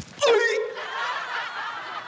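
Sitcom studio audience laughing, the laughter swelling about half a second in and carrying on.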